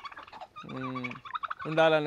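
Domestic turkeys gobbling, in short rapid bursts in the first half-second.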